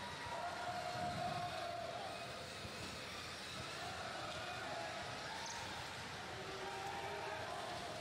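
Steady background noise of a robotics competition arena, from the robots driving and shooting and the spectators in the stands. A faint held tone rises out of it for about two seconds near the start.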